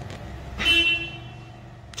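A vehicle horn sounds one short toot about half a second in, over a low steady rumble.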